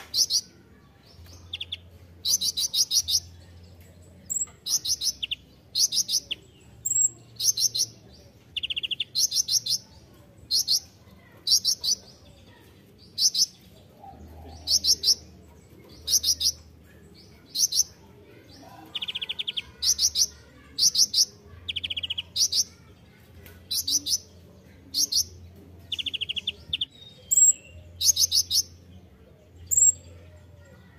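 Male purple-throated sunbird (kolibri ninja) singing: short, high, rapidly trilled chirping phrases repeated about once a second, some of them pitched lower than the rest.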